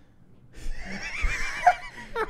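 A person laughing in a high, warbling pitch, starting about half a second in, with lower laughter near the end.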